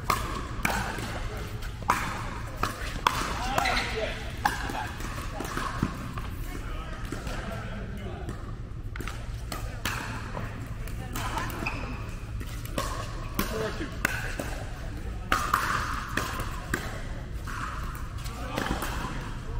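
Pickleball paddles striking a plastic ball: a quick run of sharp pops in the first few seconds, then scattered pops and ball bounces.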